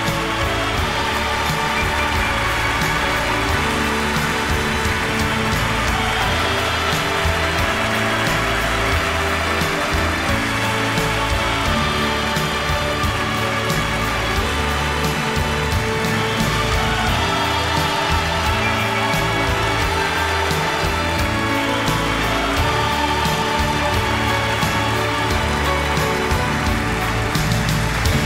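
A live orchestra with a brass section plays a sustained overture passage, with a steady noisy haze of audience applause under the music.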